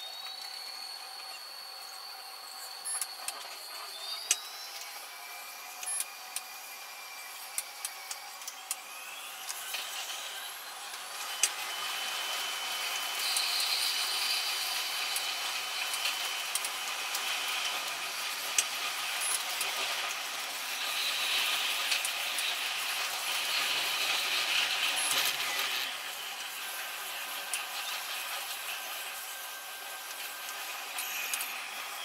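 Metro train running: an electric motor whine gliding up in pitch in the first seconds, with scattered clicks from the wheels and track. From about 11 seconds in it grows louder and more rumbling as the train runs through the tunnel.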